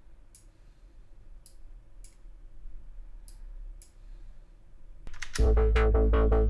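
About five quiet clicks over a low hum, as filter envelope points are edited with a computer mouse. Then, a little after five seconds in, a sampled drum loop starts playing loudly and rhythmically through Groove Agent 5's filter with its envelope synced to the host.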